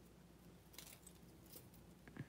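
Faint clinking of metal jewelry handled by hand, a worn bangle with chains hanging from it: two soft jingles about a second apart.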